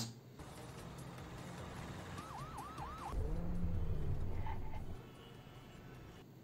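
Police siren, faint over traffic noise, giving four quick rising-and-falling whoops about two seconds in. Then a vehicle's low engine rumble grows louder for about two seconds.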